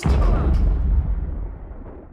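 A deep cinematic boom hit from an outro sound effect that starts suddenly and dies away over about two seconds.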